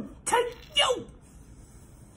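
A man's voice making two short vocal sounds, each falling in pitch, about half a second apart in the first second.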